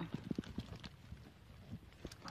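A few soft, low knocks in the first second as a hand presses into the potting mix and bark chips around freshly planted cuttings, followed by faint rustling.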